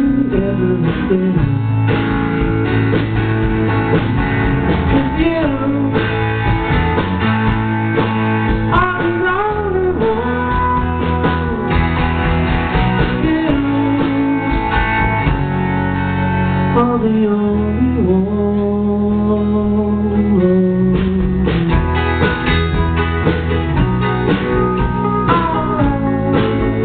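Live rock band playing a song: electric guitar, keyboard and bass guitar over a drum beat.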